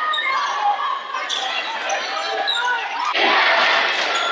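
Basketball game sound in a large gym: the ball bouncing on the hardwood court under a steady hubbub of crowd voices, which grows louder about three seconds in as a shot goes up.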